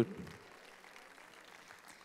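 The end of a man's word over the microphone dies away in the first half second, then only faint, even room tone remains.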